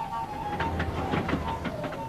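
Steam train running: a quick run of sharp beats with a low rumble, lasting about a second and a half, over background music with a steady melodic line.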